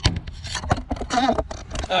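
A man's voice, with a few short sharp clicks and knocks around it.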